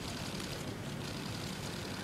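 Steady outdoor background noise: an even, low hum with no clear voices, as of vehicles and a gathering of people outdoors.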